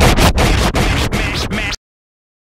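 DJ scratching a record on a turntable: a quick run of back-and-forth scratch strokes over the end of the hip-hop track, cutting off suddenly near the end.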